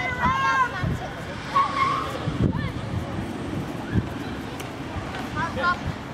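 Sideline spectators shouting encouragement in short calls, a few seconds apart, over a steady background of outdoor noise.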